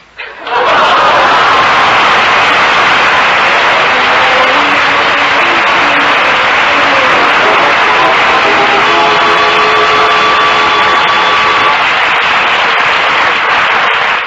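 Studio audience laughing and applauding loudly in response to a comedy punchline, heard through a 1945 radio broadcast recording. An orchestra comes in under the applause a few seconds in with a short play-off, holding long notes near the end.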